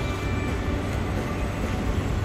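Steady city street traffic rumble, with background music laid over it.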